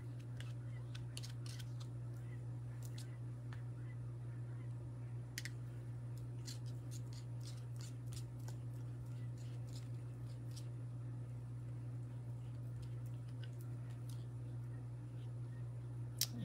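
Small scratchy scrapes and clicks of a spreading tool working torch paste across a stencil on wooden earring blanks, under a steady low hum.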